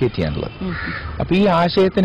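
A man speaking Malayalam, with a crow cawing in the background about a second in.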